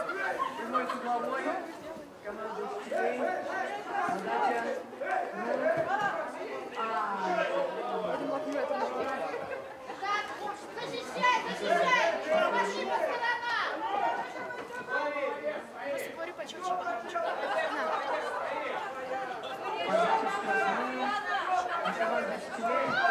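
Many overlapping voices of players and onlookers talking and calling out at once during a small-sided football game.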